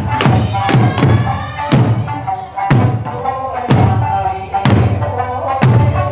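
Eisa drum dance: large Okinawan barrel drums (ōdaiko) and hand-held shime-daiko struck in unison, several strikes in the first second and then about one heavy beat a second, over Okinawan folk music from a loudspeaker.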